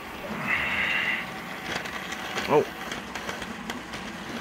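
Hornby model train running on the layout track: a short high whine about half a second in, then scattered light clicks and rattles from the wheels on the rails.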